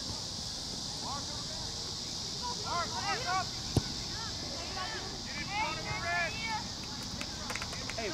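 Faint, scattered shouts and calls from players and spectators across a soccer field, over a steady high insect drone. One sharp knock about four seconds in stands out above the rest.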